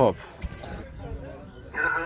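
Speech: a man says a short word, then fainter voices talk in the background.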